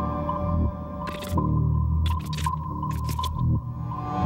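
Ambient horror-trailer music: a sustained low drone under a steady high tone, broken by a handful of short, sharp noise hits about a second in and twice more a little later.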